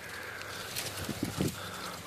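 Faint rustling of dry brush and leaves with handheld camera handling noise, and a few short faint sounds about halfway through.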